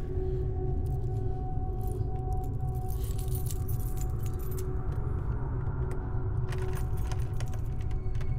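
A bunch of keys jangling in short bursts at a door lock, a few seconds in and again near the end, over a steady low drone.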